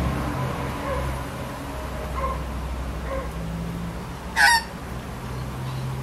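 Australian magpie giving one short, loud call about four and a half seconds in, after a few soft short notes; a steady low hum runs underneath.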